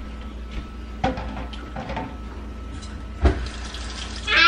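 A steady low hum with a few faint knocks and clatters, and one sharp knock about three seconds in.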